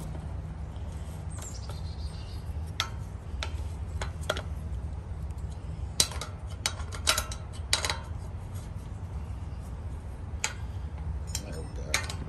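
Hex T-wrench tightening the mounting bolts of a metal gate lock: scattered, irregular sharp metallic clicks and taps, over a steady low rumble.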